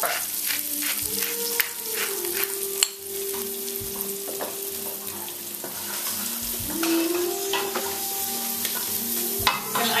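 Sliced garlic and fresh herbs sautéing in olive oil in a large pot at medium heat: a steady sizzle, with a wooden spoon stirring and scraping in the pot and a sharp knock about three seconds in. Faint held tones run underneath.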